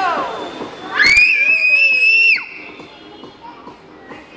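Party din of music and children's voices. About a second in, a click is followed by a high scream held for about a second and a half, then the noise drops off sharply.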